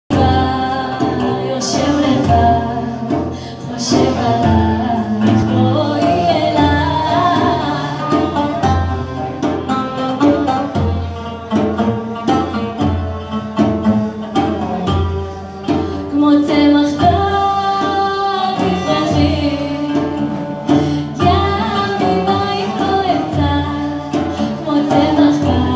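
Live acoustic ensemble: a woman singing over a frame drum that keeps a steady low beat, with violin, oud and an end-blown flute playing the melody along with her.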